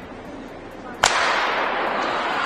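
A starter's pistol fires once, about a second in, starting an indoor track race. Right after the shot, loud noise from the arena crowd fills the hall.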